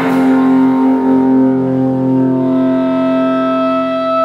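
Amplified electric guitar and bass chord struck once and left ringing, held as one steady, loud sustained sound with no drumbeat.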